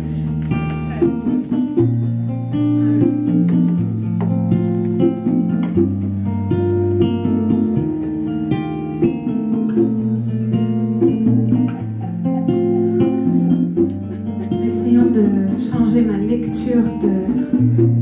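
Amplified jumbo acoustic guitar playing a slow sequence of chords, the chord changing every second or two.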